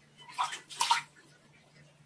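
A cat's paw splashing water in a plastic basin: two short splashes about half a second apart, within the first second.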